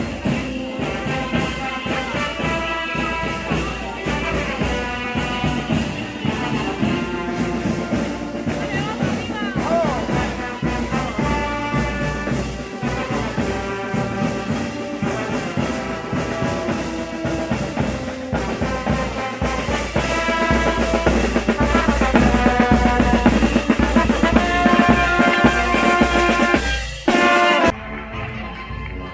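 Marching wind band playing in the street: a brass melody over snare and bass drums, getting louder about two-thirds of the way through.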